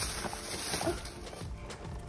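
Gift bag and tissue paper rustling as a boxed toy is pulled out, strongest in the first half, over background music.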